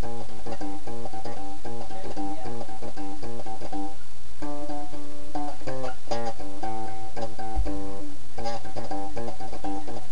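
Electric bass guitar played note by note, picking out a Christmas tune, with brief pauses about four and eight seconds in.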